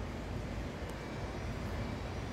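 Steady low rumble of outdoor background noise, even in level, with no distinct events.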